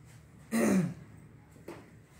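A person clears their throat once, a short sound falling in pitch about half a second in.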